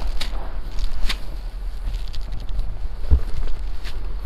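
A person climbing into an SUV's carpeted cargo area: clothing rustling and body shifting on the load floor, with a few short knocks and a dull thump about three seconds in, over a steady low hum.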